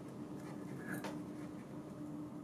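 Faint small scraping and clicks of a steel spiral circlip being worked round into its groove in a stainless vacuum flange by fingers, over a low steady hum.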